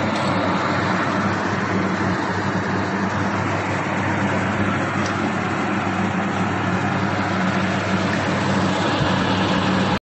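Film-wrapping and heat-shrink packaging machinery for beer cans running: a steady mechanical hum under a constant, even, fan-like noise, with no pauses or changes.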